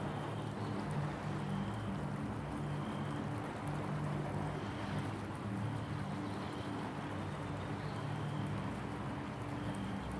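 Soft ambient meditation background music: sustained low notes that shift slowly from one to the next, over a steady soft hiss.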